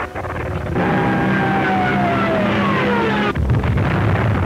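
Aircraft engine with a falling whine as the stricken plane comes down, running badly rather than as usual. Near the end it breaks suddenly into a deep rumbling explosion.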